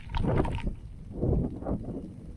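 Netafim MegaNet impact sprinklers running: spraying water with the rhythmic knocking of the impact arm, coming in uneven pulses, loudest just after the start.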